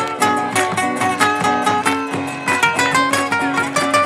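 Acoustic guitars playing an instrumental folk passage: a steady strummed rhythm with a picked melody over it.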